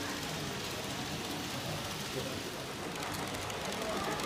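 A model electric train running along the layout's track, a steady light rattling whir, with faint voices of people in the background.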